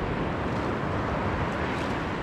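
Steady wind noise on the microphone over small surf waves washing in shallow sea water.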